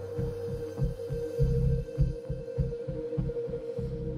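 Dark electronic television score: a steady held drone under a low, heartbeat-like throbbing pulse, about four to five beats a second, swelling heaviest around a second and a half in.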